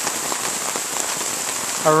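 Steady rain falling, an even hiss with scattered ticks of drops.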